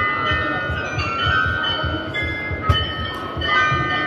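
The bells of the Munich New Town Hall Glockenspiel playing a tune: notes struck one after another and left to ring on, with voices murmuring underneath.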